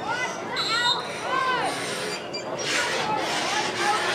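Several spectators' and sideline voices calling out and talking over one another, with no clear words.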